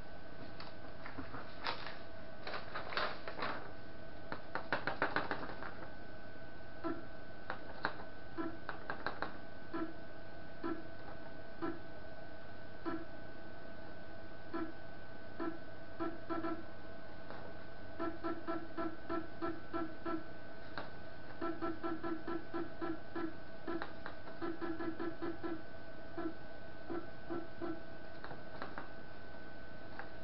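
Anet ET4+ 3D printer giving short pitched buzzes, often in quick runs of several a second, as its touchscreen controls are pressed while the bed is being levelled, over a steady electrical whine. A cluster of sharp clicks comes a few seconds in.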